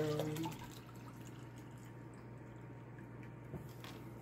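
Juice being poured from a blender jug into a drinking glass: a faint, steady liquid pour. A light tap comes near the end.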